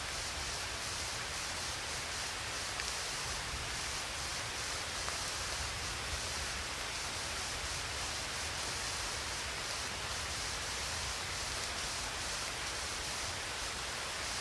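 Steady, even hiss with a low rumble underneath, unchanging throughout, with no distinct events.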